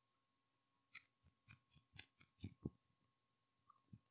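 Faint, brief scraping and wet mouth sounds, four or five of them, from a cotton swab being rubbed against the inside of the cheek to collect cheek cells.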